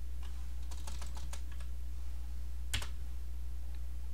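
Typing on a computer keyboard: a quick run of keystrokes about a second in, then one louder click near the three-second mark, over a steady low hum.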